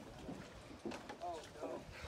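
Faint voices of people talking in the background, with a low rumble of wind on the microphone.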